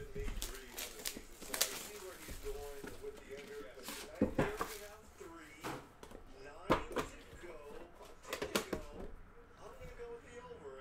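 Hands handling and opening a trading card box, slid out of its cardboard outer box, then lifting out a smaller box from inside. The sound is a run of scrapes and sharp clicks, the loudest in pairs about halfway through and again near the end.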